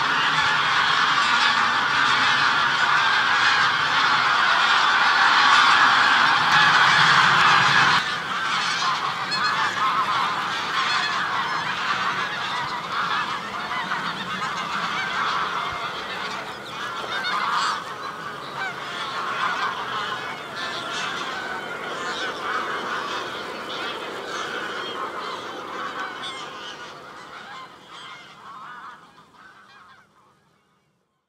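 A dense chorus of many birds calling at once, loud for the first eight seconds, then abruptly quieter with scattered individual calls, fading out near the end.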